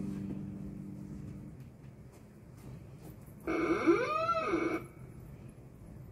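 A strummed acoustic guitar chord rings out and dies away. About three and a half seconds in comes a single drawn-out call lasting over a second, its pitch rising and then falling.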